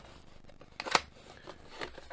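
Small cardboard retail box being handled and its end flap opened: soft rustling of card, with one sharp click about halfway through and a smaller one near the end.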